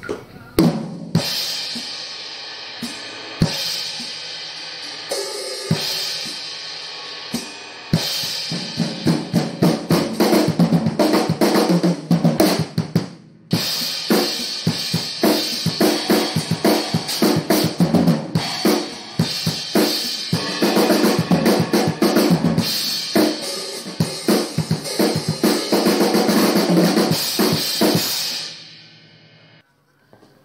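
Yamaha acoustic drum kit with Sabian cymbals played as a warm-up run-through before the drum take is recorded. Scattered hits and short fills for the first several seconds, then a steady groove of kick, snare and cymbals with one brief stop about halfway, stopping a little before the end.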